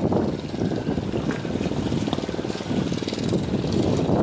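Boat engine running steadily with a rapid even pulse, over the rush of water against the hull and wind on the microphone.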